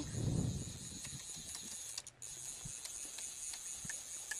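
Quiet outdoor background: a low rumble in the first half-second, then a faint steady hiss with a few soft clicks.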